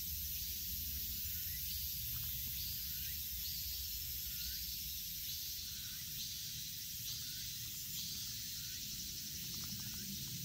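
Summer insects in the woods, a high steady shrill hiss with a short call repeating at an even pace, over a low rumble.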